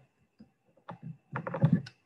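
USB cable plug being pushed into the port of a small plastic wall charger: a few sharp plastic clicks and handling rattles, thickest about one and a half seconds in.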